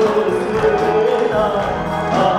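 Live Arabic pop music: a male singer's amplified voice over a full band, with long held, gliding notes.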